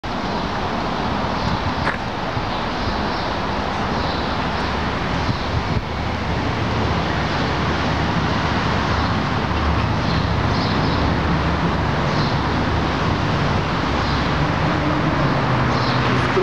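Steady street traffic noise, a continuous rush of passing vehicles, with a low engine hum that grows stronger about halfway through.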